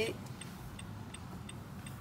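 Faint, steady ticking of a car's turn-signal indicator inside the car cabin, over a low hum from the car.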